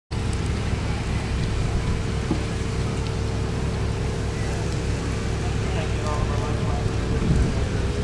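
A steady low rumble with a constant hum. Faint, distant voices come in toward the end.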